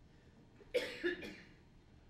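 A single short cough about three-quarters of a second in, over quiet room tone.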